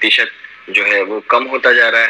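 Only speech: a man talking, heard through a video-call webinar feed.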